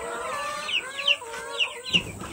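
Two-week-old broiler chicks peeping in short, high, falling chirps, several a second, with laying hens clucking lower underneath.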